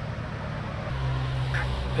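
Street background noise with a low, steady engine hum that comes in about halfway through and grows slightly louder, as from a car on the road.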